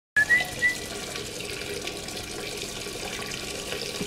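Water running from a faucet into a sink, a steady hiss, with a couple of short high-pitched tones near the start.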